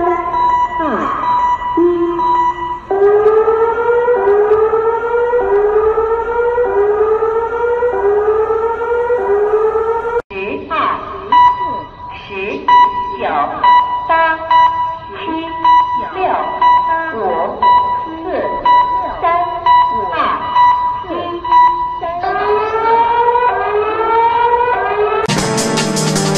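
Earthquake early-warning alarm blaring over a city's public loudspeakers: a steady beeping tone under rising whoops that repeat about every 0.8 s, warning of an earthquake seconds before the shaking arrives. After about ten seconds a voice is heard between the alarm sounds, and music comes in near the end.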